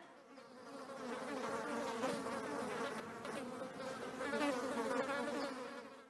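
Flies buzzing: a wavering drone that swells in over the first second, holds with small rises and falls, and fades out at the end.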